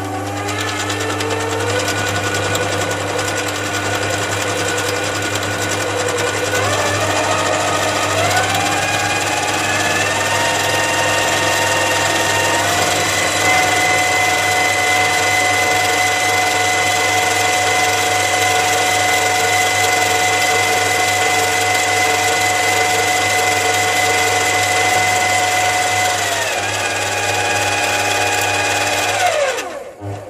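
A 7x14 mini lathe running, its chuck spinning a steel bar. The motor and gear whine climbs in steps over the first dozen seconds as the speed is turned up, holds steady, then winds down and stops near the end.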